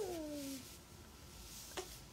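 A newborn baby's short whimper, one high cry that slides down in pitch over about half a second. A faint tick near the end.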